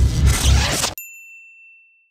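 Theme music for the channel's logo sting, with strong bass, cuts off abruptly about a second in, leaving a single ding that rings out and fades away.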